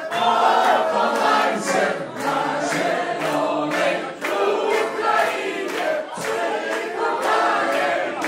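A crowd of party guests singing together with no instruments, with rhythmic hand-clapping keeping time.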